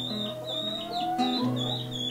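Acoustic guitar played slowly, its notes left ringing over a held bass note, with the bass dropping out briefly around the middle. Birds chirp repeatedly in the background.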